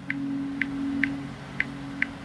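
Soft background music under the sermon's pause: a sustained low keyboard-pad chord with a light tick about twice a second.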